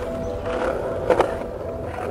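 Skateboard wheels rolling on concrete, with a sharp clack of the board about a second in, under background music with held notes.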